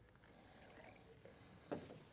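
Near silence, with one brief faint sound near the end.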